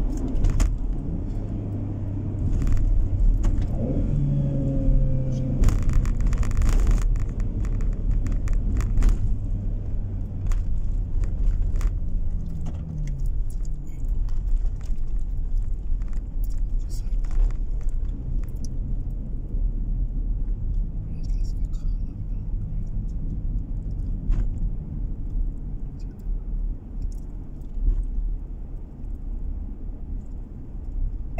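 A car driving, heard from inside the cabin: steady low engine and road rumble, with the engine's hum shifting in pitch now and then. About six seconds in there is a brief surge of hiss-like noise lasting about a second.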